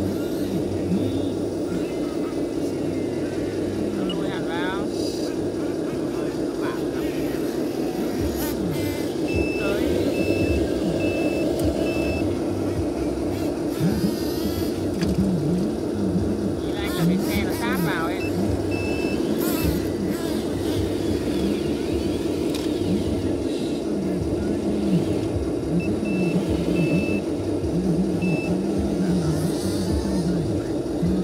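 A 1/14-scale RC hydraulic excavator's pump and motors keep up a steady drone as it digs. An electronic reversing beeper sounds three times in short runs of evenly spaced beeps. Voices talk in the background.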